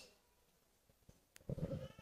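Near silence, then about one and a half seconds in a man's short, breathy laugh into a handheld microphone.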